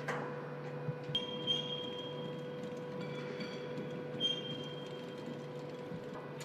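Forge-shop machinery: a steady hum with scattered metallic clicks and knocks, and two brief high metal squeals, the first about a second in and the second about four seconds in, as hot steel shell forgings are worked in a press.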